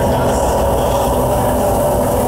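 A metal band playing live at full volume: distorted guitars, bass and drums merge into a dense, steady wall of noise with a sustained chord ringing through it. The on-camera microphone is overloaded, which flattens the music into a harsh roar.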